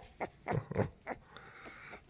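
Three-week-old puppy being held, giving about four short grunts and squeaks in quick succession, then quieting.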